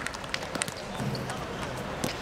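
Ambience of an outdoor football pitch: faint, distant voices of players with scattered sharp taps and knocks.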